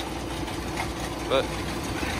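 Tractor engine running steadily at an even pitch while pulling a mounted inter-row hoe through sugar beet rows.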